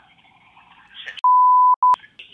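Censor bleep tone: one steady high beep about half a second long, then a second, shorter beep of the same pitch ending in a click.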